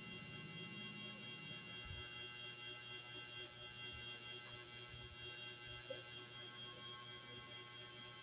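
Faint handling of a small folded paper slip being unfolded by hand, a few soft clicks and rustles, over faint steady background tones.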